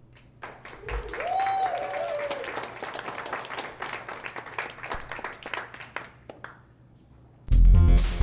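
Audience clapping, with one voice whooping about a second in; the applause dies away and near the end loud electronic music starts abruptly with heavy bass.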